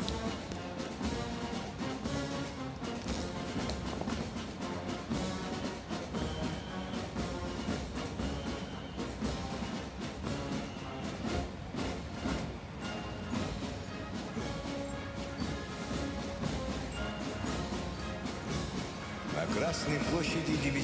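Military brass band playing a march, with drumbeats, heard steadily at a moderate level.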